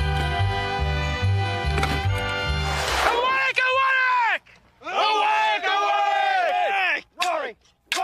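Background music for the first three seconds or so, then armoured men shouting battle cries: a long yell, a short pause, then several loud overlapping yells that fall in pitch, and a couple of short shouts near the end.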